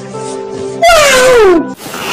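Steady held chord of background music, then about a second in a man's loud, long wailing cry that slides down in pitch, cut off by a short noisy burst near the end.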